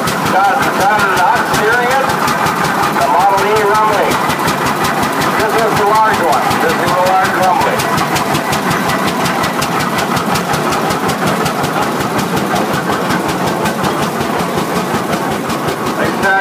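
Large early gasoline prairie tractor engine running, its firing strokes heard as an even, rapid beat as the steel-wheeled tractors pass. Voices talk over it in the first half.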